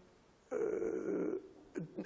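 A man's drawn-out hesitation sound, a rough, unpitched "yyy" filler in the middle of a sentence, starting about half a second in and lasting about a second.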